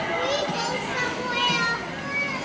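A toddler's voice: two short, high-pitched vocal sounds, one just after the start and one about a second and a half in, over steady background noise of a busy room.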